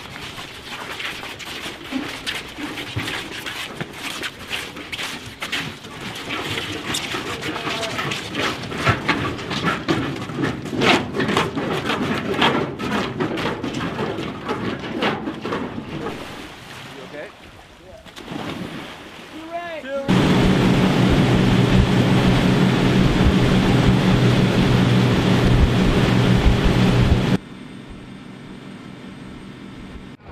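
Busy shouting voices and splashing as trainees go into the water. About 20 s in, a boat engine starts up loud and steady, runs for about seven seconds, then drops suddenly to a quieter steady running sound.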